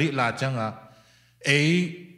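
Only speech: a man talking into a handheld microphone, two short phrases with a pause of under a second between them.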